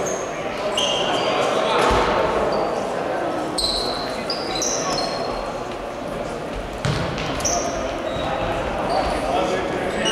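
Basketball shoes squeaking in short, high squeaks on a hardwood gym floor, with players' voices echoing in the hall and a couple of low thuds.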